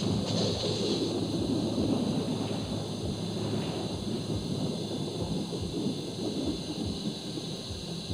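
A rumbling, crackling sound effect like thunder, with irregular low thumps, strongest in the first few seconds. It is from the soundtrack of a TV drama's special-effects scene, re-recorded off a television with poor sound.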